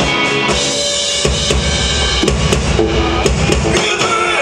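Live rock band playing an instrumental passage with the drum kit to the fore: rapid bass drum beats from about a second in, with snare and cymbal hits over the sustained guitar and bass notes.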